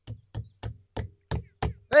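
Repeated knocking on a house roof, about seven short, even knocks roughly three a second, as the leaking roof is being repaired.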